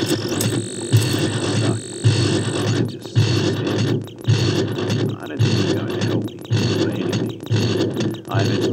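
Soundtrack music with synthesizer and a steady beat.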